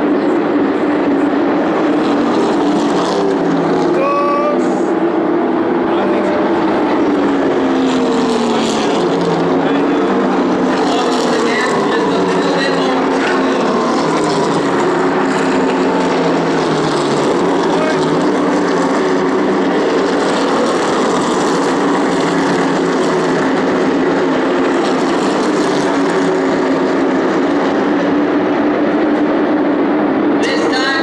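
A field of NASCAR stock cars racing around an oval at speed, their V8 engines running continuously, with several cars sweeping past so the engine pitch falls as each goes by.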